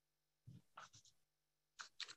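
Faint rustling and light knocks at a lectern, as papers are set down and handled, in two short bursts about a second apart.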